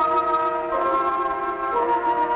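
Background film-score music: held chords with a sustained woodwind-like line, changing chord twice.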